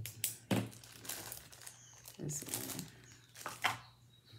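Clear plastic jewelry bag crinkling in irregular bursts as it is handled.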